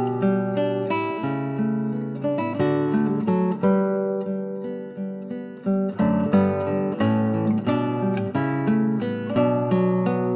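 Background music of acoustic guitar, plucked and strummed notes ringing in a gentle progression. It softens for a moment and then picks up fuller again about six seconds in.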